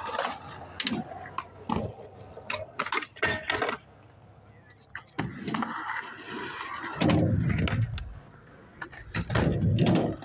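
Skateboard on concrete: a series of sharp clacks of the board striking the ground, then the low rumble of its wheels rolling close by in the second half.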